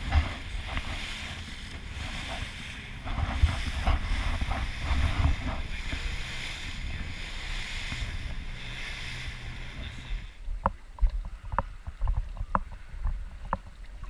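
Wind buffeting an action camera's microphone and water rushing past the hull of a rigid inflatable boat running at speed, with a deep rumble. About ten seconds in the sound cuts to a quieter rumble with a series of sharp clicks and knocks.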